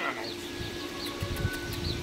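Outdoor ambience: a small bird chirping repeatedly, about twice a second, over a steady hum and irregular low rumbling.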